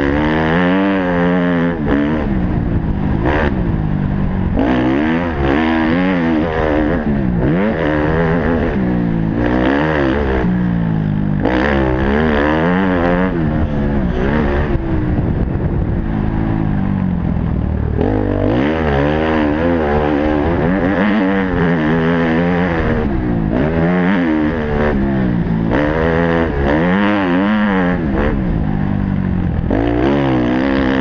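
Motocross bike's engine revving hard and dropping back over and over as the rider accelerates, shifts and backs off for corners, heard close up from a helmet-mounted camera.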